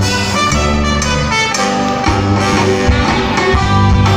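Lively band music for the carnival dance, with brass and string instruments playing continuously at full volume.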